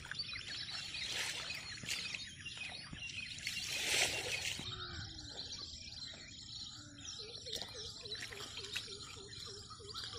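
Birds chirping and calling outdoors, many overlapping calls. A brief louder noisy swell comes about four seconds in, and in the second half a quick steady run of short, low repeated notes sounds.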